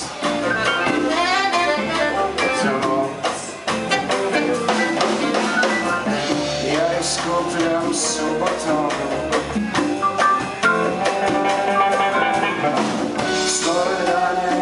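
A live jazz band playing a swinging chanson-style number: electric guitars and melody lines over a drum kit and hand percussion, with bright cymbal crashes around eight seconds in and near the end.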